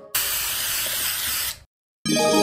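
Aerosol spray can sound effect: one hiss lasting about a second and a half that stops suddenly.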